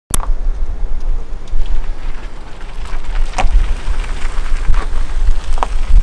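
Wind buffeting the microphone outdoors: a loud, gusting low rumble that swells and dips, with a few light clicks.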